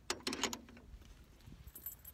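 A few short scrapes and knocks about half a second in, then a couple of faint ticks near the end: handling noise as the phone is moved against clothing.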